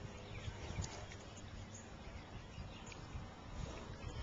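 Faint wind buffeting the microphone on an open boat on a lake, a low uneven rumble, with a few light ticks.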